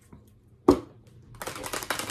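A deck of oracle cards being handled: one sharp knock about two-thirds of a second in, then in the second half a fast, dense run of clicks as the cards are shuffled.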